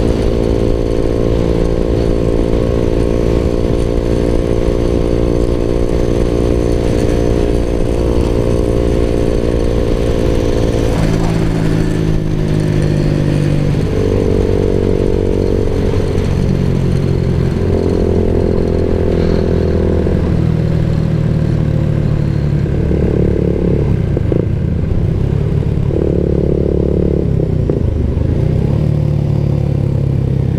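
Suzuki Raider 150 Fi's single-cylinder four-stroke engine running under way, held at steady revs for about the first ten seconds. Then the engine speed drops and rises again in several short spells of throttle.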